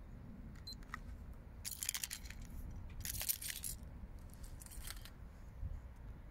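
Handheld phone being moved, with a steady low rumble of wind and handling on its microphone and three short bursts of high rustling or jingling, the loudest about three seconds in.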